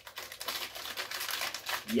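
A small packet of pork scratchings crinkling and crackling as it is handled in the hands, a dense run of fine crackles.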